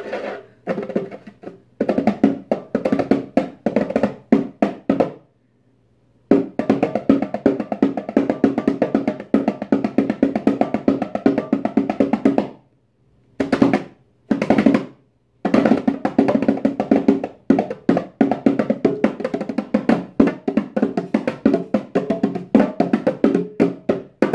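A pair of bongos played by hand, fingertips drumming the heads in long runs of rapid strikes, broken by a few short pauses.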